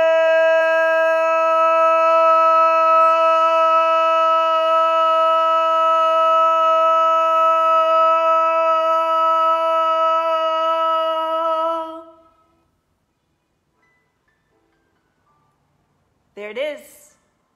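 A woman's voice toning: one long vocal tone held at a single steady pitch, which stops about twelve seconds in.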